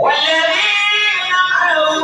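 A man singing a madh, a song in praise of the Prophet, into a microphone in a high, nasal voice, holding long notes that bend in pitch.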